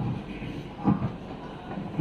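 Microphone handling noise as a mic is passed from hand to hand: low rumble with a few short bumps, the loudest about a second in.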